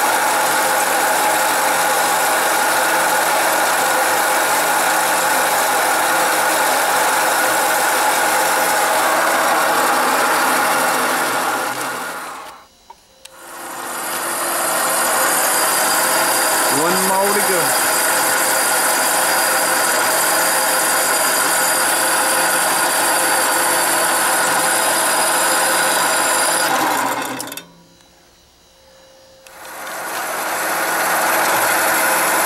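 Metal-cutting band saw running, its worn blade cutting steadily through the hardened steel of a splitting wedge's head. The sound drops away twice, about halfway through and near the end, then picks up again.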